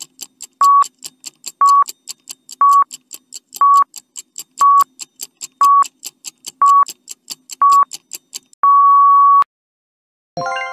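Countdown timer sound effect: a short electronic beep once a second with quick ticking in between, ending in one longer beep about nine seconds in that marks time up.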